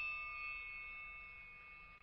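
A bell-like chime ringing out and slowly fading, several high tones sounding together, then cutting off suddenly at the end.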